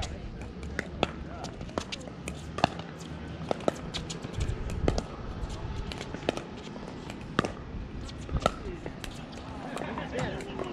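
A pickleball rally: sharp pops of paddles striking the hollow plastic ball, a dozen or so at uneven intervals, some from neighbouring courts.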